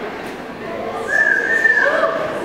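A person whistling one high held note about a second in, over the murmur of the audience in a large hall.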